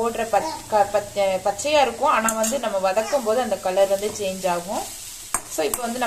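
Perforated steel spatula stirring and tossing grated carrot in a stainless steel kadai, scraping against the pan over the sizzle of the frying, with a short lull and a few sharp clicks near the end.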